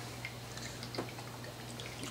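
Quiet room tone with a steady low hum and a single faint click about a second in.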